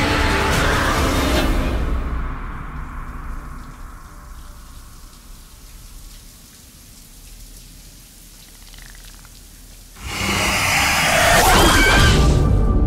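Horror-trailer soundtrack: a loud opening that fades into a quiet hiss of running shower water, then a sudden loud burst with a high, wavering sound about ten seconds in.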